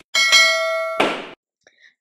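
A bell-like ding sound effect, the kind used for a notification-bell click: one bright metallic ring that sounds for about a second, then stops with a short burst of noise.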